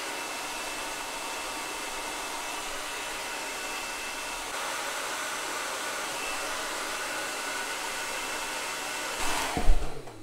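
Handheld hair dryer blowing steadily, aimed close at a small plastic toy arm to heat away white stress marks. A loud thump comes near the end, just before the blowing cuts off.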